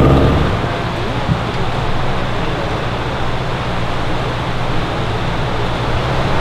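Small outboard motor on an inflatable raft dropping to a low run about half a second in, its faint hum beneath a steady rush of river water.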